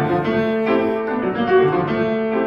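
Concert grand piano played solo in classical style, chords struck one after another over held, ringing notes.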